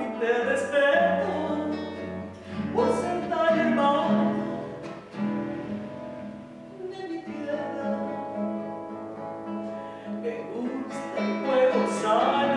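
Classical guitar playing an instrumental passage of a slow song, plucked and strummed chords moving from note to note.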